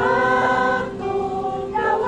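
Children's choir singing in long held notes, several voices together, with a new phrase starting right at the beginning.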